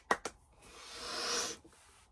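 A quick run of two or three hand claps at the start, followed by a breathy hiss, like a long exhale through the mouth, that swells for about a second and stops abruptly.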